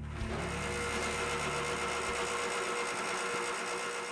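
Electric bench grinder running: a steady whine with a low hum beneath it that drops away about halfway through.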